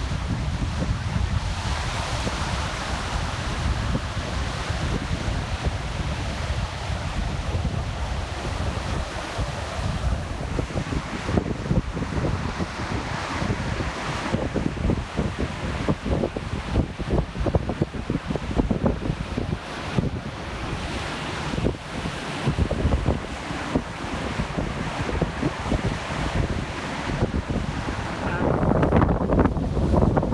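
Ocean surf breaking and washing on a beach and around coastal rocks, with wind buffeting the microphone in gusts; the wind gets louder near the end.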